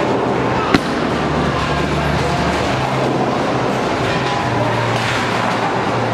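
Bowling alley din: a bowling ball hits the lane with a sharp knock under a second in and rolls toward the pins. Behind it is a steady background of balls rolling, pins clattering, music and chatter.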